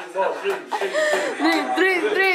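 People laughing and chuckling, in a quick run of short pitched voiced sounds.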